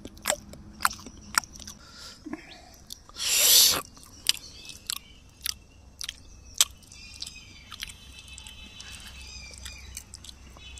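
A man chewing a mouthful of chicken legs, with sharp crunches about twice a second in the first half. A short, loud hissing rush comes a little past three seconds in, and birds chirp in the second half.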